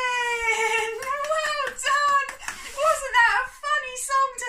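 A woman's high-pitched voice calling out without clear words: a long held note that slides down in pitch, then a run of short, high sing-song calls.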